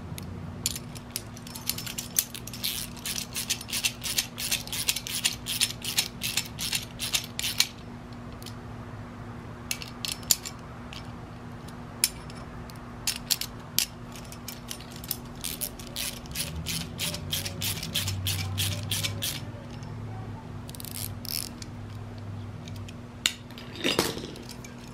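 Small socket ratchet clicking in quick runs of clicks with short pauses, as it turns nuts on the bolts of a stainless-steel grappling hook.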